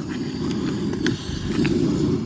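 Portable gas canister stove burner turned up high, its flame giving a steady low rumble, with a few faint ticks.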